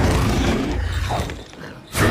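Film sound effects: a low rumble with mechanical creaking and rattling, which drops away about a second and a half in.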